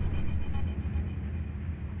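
Low, steady rumble of distant city traffic, with a faint high tone fading out within the first second.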